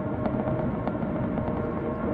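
Steady road and engine noise of a car driving at highway speed, heard from inside the cabin, with a faint steady hum running through it.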